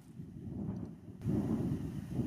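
Wind buffeting the microphone: an uneven low rumble that grows louder a little over a second in.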